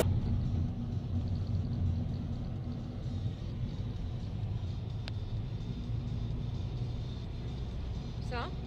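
A car driving, heard from inside the cabin: a steady engine and road rumble, with one sharp click about five seconds in.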